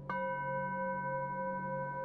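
Singing bowl tuned to G struck just after the start, over a bowl tone already ringing. It rings on in several steady tones with a slow wavering beat.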